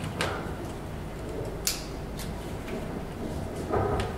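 A few short clicks and light scrapes from handling metal hair clips and bobby pins while pinning up hair, the sharpest click a little before the middle, over a steady low room hum.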